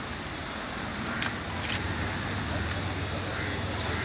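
Steady outdoor background noise with a low hum, a little louder in the second half, and a few faint clicks a little over a second in.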